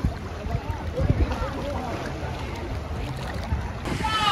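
Swimming-pool water sloshing and moving close to the microphone, an uneven low rumble, with faint voices of people around the pool behind it.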